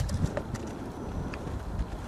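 Wind buffeting the microphone in uneven low gusts, with a sharp click at the very start and a few lighter ticks after it.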